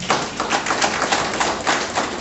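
Audience applauding: many hands clapping in a dense, irregular patter that carries on through the speaker's pause.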